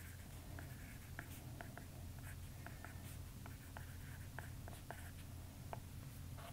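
Faint taps and clicks of a stylus on a tablet's glass screen during handwriting, about three a second, over a low steady hum.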